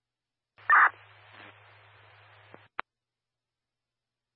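Two-way fire radio keying up with no voice: a short, loud chirp, then about two seconds of faint static hiss over a low hum, cut off by a click as the transmission drops.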